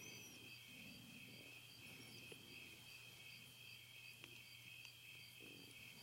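Near silence: faint crickets chirring, a steady high trill with soft, evenly repeated pulses.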